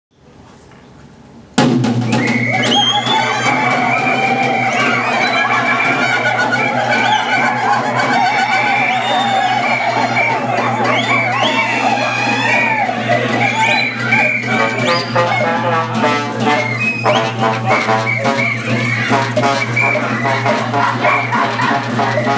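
Brass band playing a swing tune, starting abruptly about a second and a half in with full sustained chords, then moving into choppier short notes for the second half.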